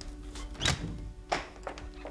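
Two footsteps on a hard floor, sharp knocks about two thirds of a second apart, over soft background music with long held notes.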